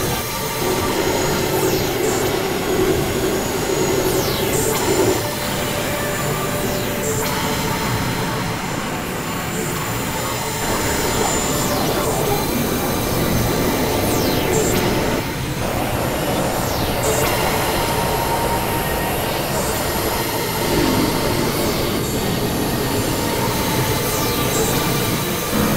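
Experimental electronic noise music from synthesizers: a dense, steady wash of noise with held drone tones and high screeching sweeps that fall in pitch every few seconds.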